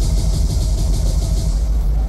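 Deep, steady bass rumble through a club sound system, with a hiss on top that fades out after about a second and a half.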